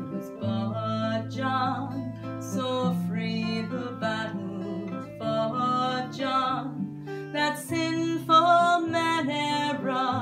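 A woman singing a slow Scottish folk song, her voice held in long notes with vibrato, accompanied by an acoustic guitar.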